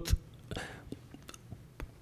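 A brief pause in a man's speech: his voice breaks off, then a faint breath and a few small mouth clicks before he speaks again near the end.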